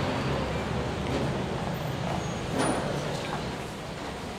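A low, steady mechanical rumble that fades about three seconds in, with one short sharp sound just before it fades.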